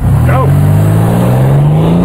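A sport pickup truck's engine under hard acceleration, starting suddenly and loud, its pitch climbing steadily as it pulls.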